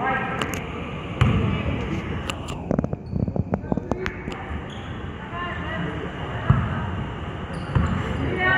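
A basketball bouncing on a hardwood gym court, with a quick run of bounces about three seconds in and a sharper single hit later, over the chatter of spectators' voices.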